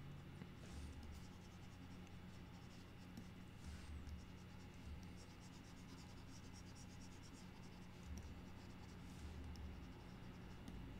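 Faint scratching of a pen stylus stroked across a drawing tablet in a few strokes, with light ticks that come thickest near the end, over a steady low hum.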